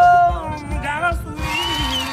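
Music with a steady low beat and a singing voice: a long held sung note ends just after the start, followed by shorter sliding vocal phrases.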